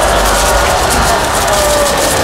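Sound-effect bed of a haunting: a loud, steady wash of wind-like noise with faint wailing voices sliding in pitch, more noticeable near the end.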